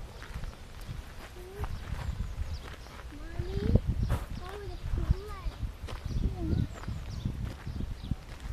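A young child's voice making short, high, rising-and-falling whining sounds several times, over footsteps on a gravel path.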